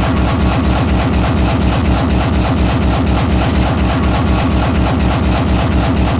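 Hardcore electronic dance music in a DJ mix: a fast, heavy kick drum beat repeating several times a second without a break.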